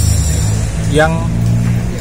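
A man's voice saying a single word, over a steady low hum, such as an engine running nearby.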